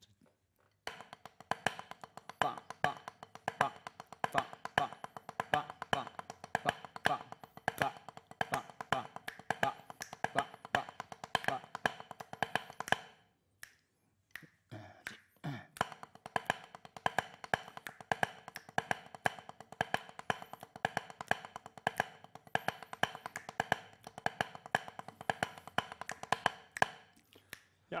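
Drumsticks on a practice pad playing a six-stroke roll rudiment, a dense run of light strokes with louder accented strokes standing out. The playing stops for about a second and a half around halfway through, then starts again.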